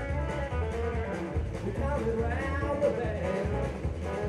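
Live rock-and-roll band playing, with electric guitar over a steady bass and drum beat.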